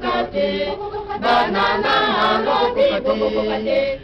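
A choir singing a repetitive religious chant, several voices together in short repeated phrases.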